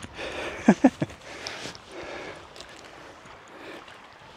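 Shallow, stony river flowing, with footsteps splashing through the water as a hiker wades across. Two short vocal grunts just under a second in.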